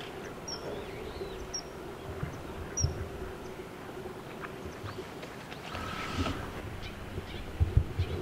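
Common kingfisher giving short, high, thin call notes, about four in the first three seconds, over a steady low background hum. A few low thumps near the end.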